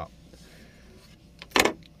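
A quiet stretch of soft handling, then a single sharp clack from a folding knife about one and a half seconds in, as it is handled and put aside.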